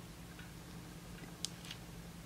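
Quiet room tone with a faint steady hum and two light ticks about one and a half seconds in, from long acrylic nails and a metal pointing tool handling a silicone practice hand.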